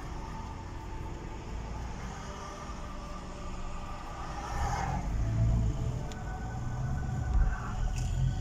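Engine and road noise heard from inside a moving car, a steady low rumble that grows louder about halfway through as the car picks up speed.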